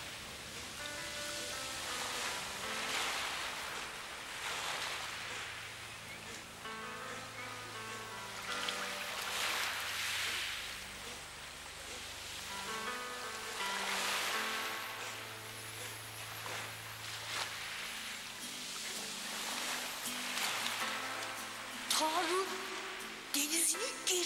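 Soft film score of held notes laid over surf washing onto a beach, the waves swelling and falling back about every five to six seconds.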